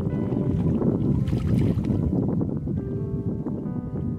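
Water splashing and streaming off a fishing net as it is hauled up out of the river, loudest about a second in, over background music with steady tones.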